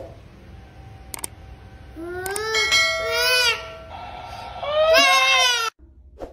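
Infant crying: two wailing cries, about two seconds in and again about five seconds in, the second cut off abruptly. Two short clicks come earlier.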